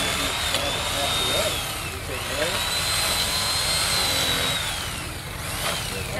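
Electric fillet knife running with a high-pitched whine that sags in pitch and climbs back twice while fish are being filleted.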